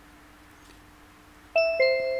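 A two-note descending chime, a ding-dong, about one and a half seconds in: a higher ringing note, then a lower one a moment later, both ringing on and fading. It opens an audio track, after a quiet stretch with a faint steady hum.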